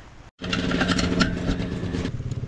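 DeWalt 20V cordless tire inflator running, a steady motor hum with a fast, even pulsing, pumping up a dirt bike's rear tire. It starts about half a second in.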